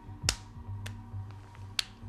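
Three sharp clicks, loud ones just after the start and near the end with a fainter one between, over quiet background music with a low drone.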